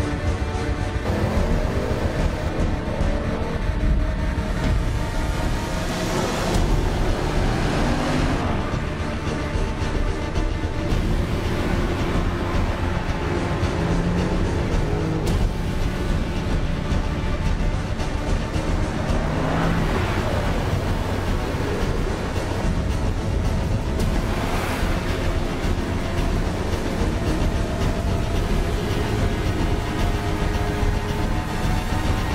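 Dramatic background music with several rising swells, over a steady low drone from the Range Rover Sport Plug-In Hybrid as it climbs the stairway.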